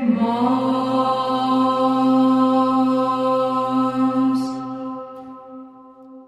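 Orthodox Byzantine chant by male voices: a final note held steadily over a lower drone (the ison), then fading away over the last second or two.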